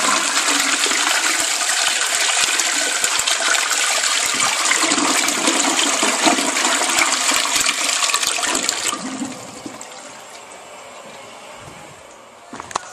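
American Standard Plebe toilet flushing: a loud, steady rush of water down the bowl that drops off about nine seconds in to quieter running water.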